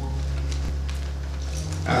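A low steady droning tone that shifts slightly in pitch about one and a half seconds in, with a man's voice starting again at the very end.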